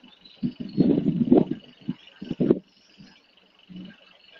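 A man's voice in a few brief, broken sounds, then a pause, with a faint steady high-pitched tone underneath.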